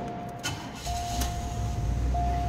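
A 1985 Oldsmobile Delta 88's engine cranks and catches about a second in, then runs steadily. A steady warning tone from the car sounds throughout and drops out briefly as the engine cranks.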